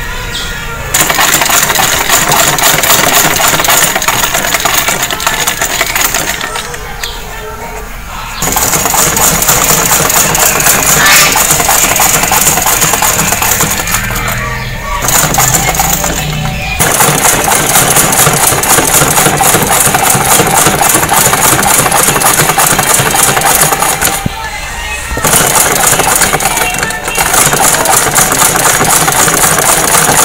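Domestic sewing machine running in long runs of rapid stitching through layered shirt fabric, easing off and stopping briefly about seven seconds in, around fifteen seconds in and near twenty-five seconds in.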